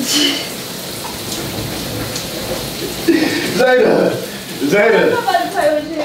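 Shower spray running steadily, with raised voices breaking in over it from about three and a half seconds in.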